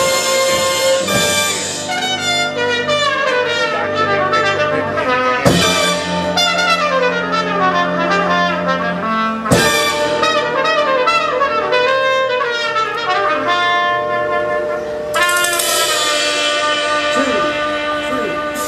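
College jazz big band playing live: trumpets, trombones and saxophones in full ensemble with fast falling runs, over upright bass and drums. Two sharp accented hits land about five and a half and nine and a half seconds in, and the sound turns brighter near the end.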